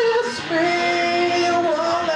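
Rock song played on electric guitar over a loop-pedal backing, with a long held high note from about half a second in.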